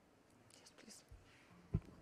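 Faint whispering, then a single short low thump near the end.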